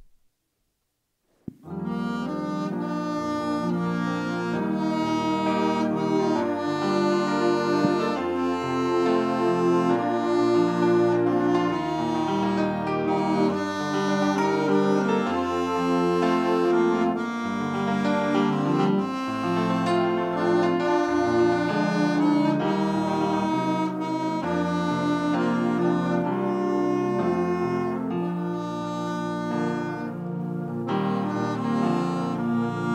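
A saxophone plays a slow melody over held chords and a low bass line. It is an instrumental introduction, starting about a second and a half in after a brief click.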